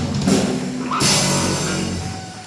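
Live rock band with electric guitars, bass and drum kit hitting the closing chords of a song, with cymbal crashes about a third of a second in and again at one second over a held chord.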